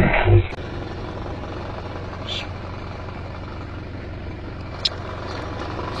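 A vehicle engine running steadily, a continuous even hum with a single sharp click near the end. A voice is heard briefly at the very start.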